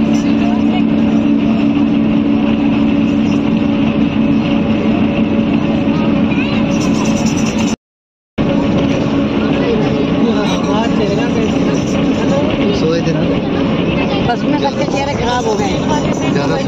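Steady drone of a moving coach bus heard from inside the cabin: engine and road noise, with passengers' voices over it in the second half. The sound cuts out for about half a second a little before the middle.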